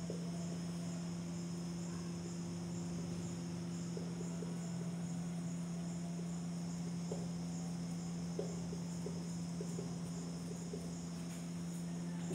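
Quiet room background: a steady low hum under a faint, evenly pulsing high chirp, with a few soft scratches of a marker writing on a whiteboard between about four and nine seconds in.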